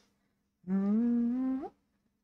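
A woman humming a tune: one held note that glides upward at its end.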